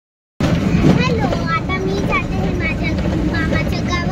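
Steady engine and road rumble inside a moving bus, with indistinct voices over it. It starts suddenly after a moment of silence at the start.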